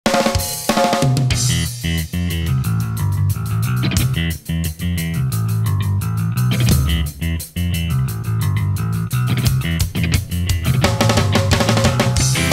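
Instrumental opening of a ska song played by a rock band: a drum kit keeping a steady beat with snare and hi-hat, electric guitar and a busy bass line, with a few short breaks in the rhythm.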